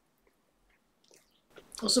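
Faint chewing and small mouth clicks from people eating cake, then a voice starts speaking near the end.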